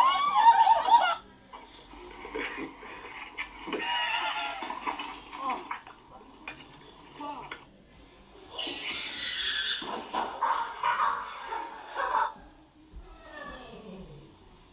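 People's voices from home-video clips, in bursts, some of them high-pitched, with quieter stretches between.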